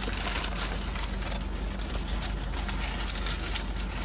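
Steady low hum and hiss inside a car's cabin with the engine running.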